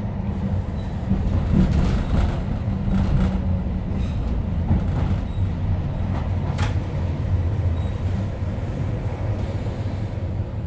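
Interior sound of a Tyne and Wear Metrocar running on the rails: a low steady rumble, with a few sharp clicks from the running gear.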